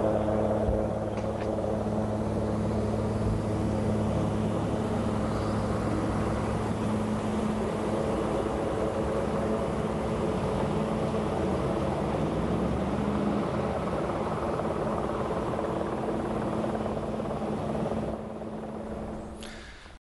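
Steady low mechanical hum of vehicle engines running, with a constant low pitch and its overtones; it fades away sharply near the end.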